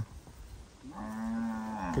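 A cow mooing once: a single held call about a second long, starting about a second in.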